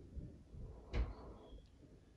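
A metal fork knocks once against a ceramic plate about a second in, a single short clink-knock.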